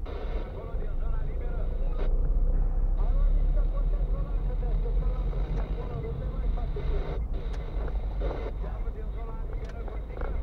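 Car cabin noise while driving slowly: a steady low rumble of engine and road, with indistinct voice-like sounds over it.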